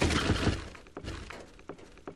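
Sound effect of a shattering, crashing burst of debris with a deep rumble, loud at first and fading after about half a second, with a few separate clicks of pieces landing near the end.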